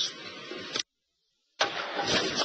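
Broadcast segment change: a dense background sound cuts off abruptly under a second in, there is a short stretch of dead silence, and then a loud, dense sound starts suddenly with the sports-section opener.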